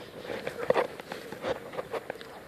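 A few faint, irregular footsteps on dry ground, with light rustles.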